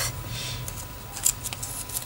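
Dictionary paper rustling as a small folded paper triangle is handled between the fingers, loudest in the first half second.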